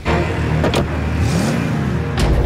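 Car engine revving: it comes in suddenly, climbs in pitch and falls back near the end.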